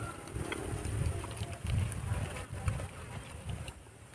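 Close-up eating noises: irregular low chewing and mouth sounds of people eating raw greens by hand, over a faint steady insect drone.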